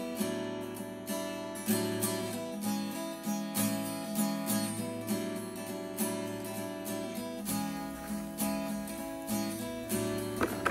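Background music: acoustic guitar strummed in a steady, regular rhythm.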